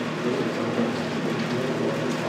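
Window air conditioner running: a steady hiss of air noise.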